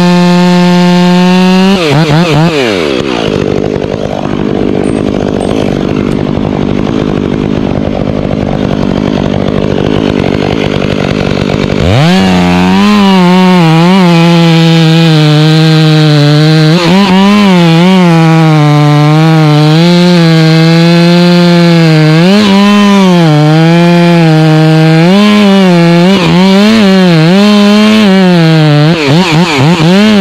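Stihl chainsaw cutting through a pine trunk at high revs. About two seconds in the engine note falls to a lower, rougher running for roughly ten seconds, then the high whine returns and wavers up and down as the chain loads and frees in the cut.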